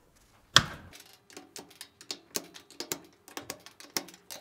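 Plastic oven control knobs being pushed back onto their spindles on the control panel: a run of light, irregular clicks and taps, with one sharper knock about half a second in.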